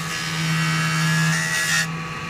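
A toothless, coated circular saw blade cutting through a piece of raw amber: a loud, hissing grind over the steady hum of the saw's motor, with a faint whine that rises slightly before the cut stops suddenly near the end.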